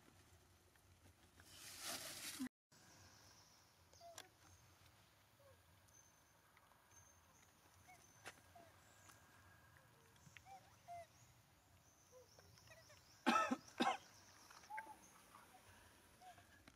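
Quiet outdoor ambience with faint scattered chirps. Near the end come two short, loud cough-like vocal sounds about half a second apart. A brief hiss early on cuts off abruptly.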